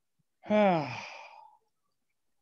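A person's voiced sigh, falling in pitch and trailing off over about a second.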